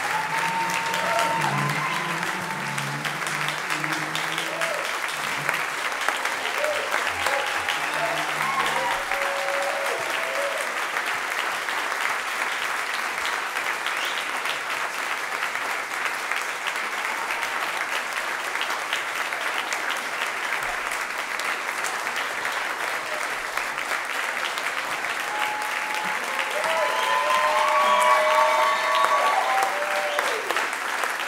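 Audience applauding and cheering, with scattered whoops; the cheering swells near the end.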